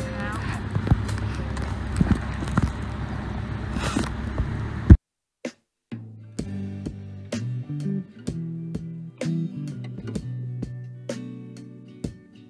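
Steady rumble and wind noise aboard a moving narrowboat, ending in a sharp click about five seconds in. After a second of silence, plucked acoustic guitar music begins.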